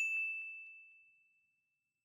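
A single bright chime from an animated logo sting, struck once and ringing on one high tone that fades away over about a second and a half.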